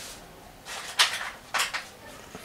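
Handling noise from hands picking up objects on a wooden table: three short scraping rustles about a second in, the middle one a sharp click.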